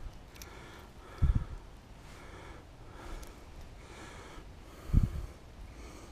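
A man's close breathing, soft puffs through the nose, with two short low thumps about a second in and near the end.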